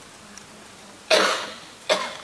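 A person coughs once, loudly, about a second in, with a shorter burst of the same kind just before the end.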